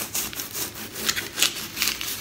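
A large kitchen knife sawing back and forth through a frozen log of Vietnamese fish paste in its wrapping, making repeated rasping strokes, a few a second.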